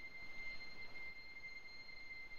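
A steady high-pitched ringing tone, with a fainter higher tone above it, over a faint hiss.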